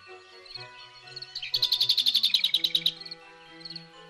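A songbird's fast trill of about sixteen rapid, evenly repeated high notes, lasting about a second and a half and starting just before the middle, over soft background music with held tones.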